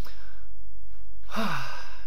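A man's sigh: a faint breath in, then past the middle a breathy exhale that carries a short falling voiced tone, over a steady low hum.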